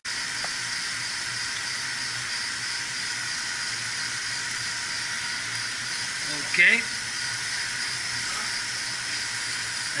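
Steady hiss with a low hum from the running mechanical-room equipment: pumps and water moving through the pipes. A short vocal sound comes about six and a half seconds in.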